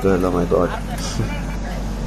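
Men's voices talking at a roadside over a steady low rumble of road traffic; the voices die away partway through, leaving the rumble.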